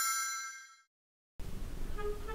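A bell-like ding sound effect rings and fades out within the first second, followed by a moment of dead silence. Light background music then starts with a run of short melodic notes.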